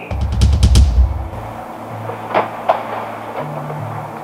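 Dramatic background-music sting: a deep booming drum hit with a fast run of sharp ticks over it in the first second, settling into a low, held bass drone.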